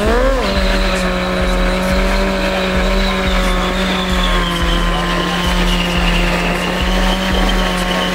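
Honda CBR600F4 inline-four engine revving up and then held at high revs while the rear tyre spins and squeals on the asphalt in a rolling burnout. A music track with a steady beat plays underneath.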